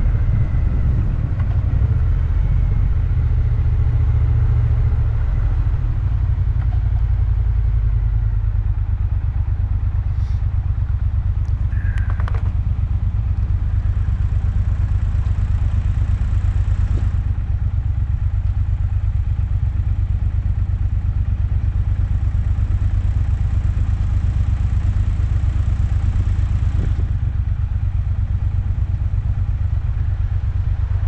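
Motorcycle engine running steadily at a constant road speed, a continuous low drone without revving.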